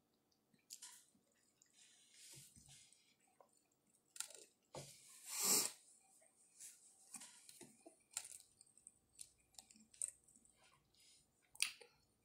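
Quiet chewing of a mouthful of cheeseburger: soft wet mouth clicks and squishes. About halfway through comes a short, louder rustle of a napkin being handled.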